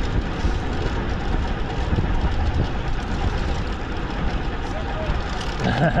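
Bicycle rolling along a paved path, heard from a handlebar-mounted camera: a steady rumble of tyres on tarmac mixed with wind noise on the microphone.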